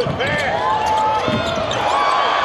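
Game sound from a basketball court: sneakers squeaking in short, sharp squeals on the hardwood as players cut and drive, with a basketball bouncing on the floor.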